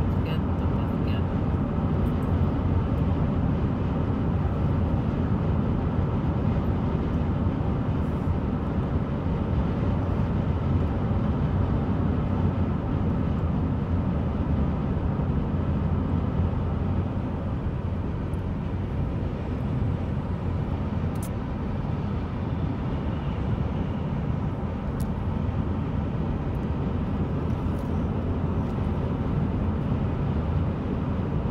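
Steady low rumble of road and engine noise inside a car's cabin, driving at highway speed.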